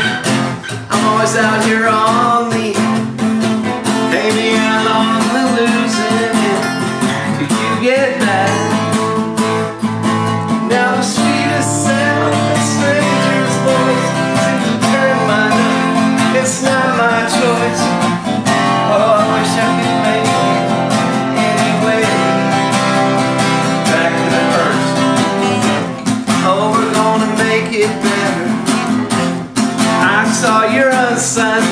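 Two acoustic guitars played together, strumming chords in a steady, continuous groove.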